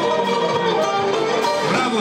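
Band music led by plucked string instruments, with held, slightly wavering melodic notes.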